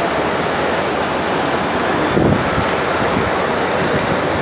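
Steady, loud rushing noise with no distinct events, and a brief low rumble about two seconds in.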